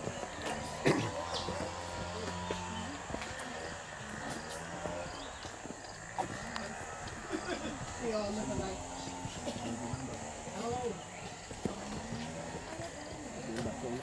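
Indistinct voices of people talking some way off, with footsteps on a paved path.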